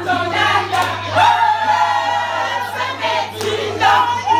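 A group of women singing together in chorus, with long held, gliding notes, over a steady low hum.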